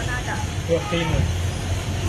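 A woman speaking in Thai over a steady low rumble of road traffic.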